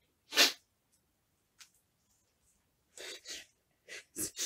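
A woman's single sharp, loud burst of breath through the nose, her hand at her face, about half a second in. Near the end come two softer breaths.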